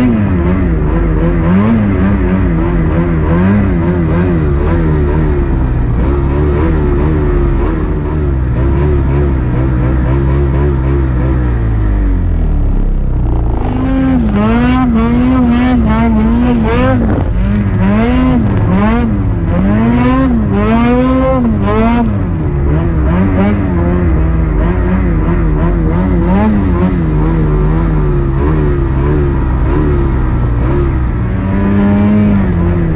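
Snowmobile engine running under load through deep powder, its pitch wavering with the throttle. About halfway through it gets louder and higher, revving up and down in repeated surges roughly once a second for several seconds, then settles back.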